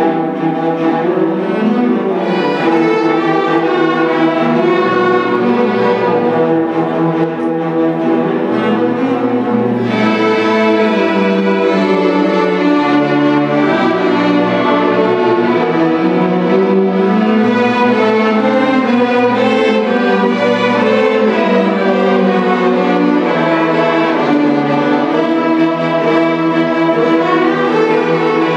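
String orchestra playing: violins, cellos and double basses bowing sustained notes in full ensemble, with the texture growing brighter about ten seconds in.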